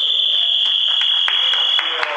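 A loud, steady high-pitched signal tone held for about two seconds, with a few sharp knocks and voices faintly beneath it.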